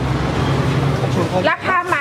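A steady low rumble of background noise, then a woman starts speaking about a second and a half in.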